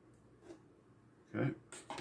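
Quiet room tone with one faint, brief tap about half a second in, as a wire is handled at the controller's terminals, followed by a spoken "okay".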